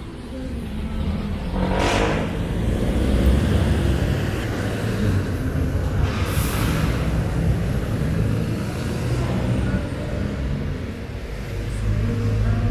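Street traffic: a city bus and other vehicles running and passing close by, a steady low engine rumble. Two short hissing bursts cut through, about two seconds in and again about six seconds in.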